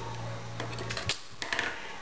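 Faint clicks and handling of a small metal hair clip being taken off its cardboard card, over a low steady hum that stops about halfway through.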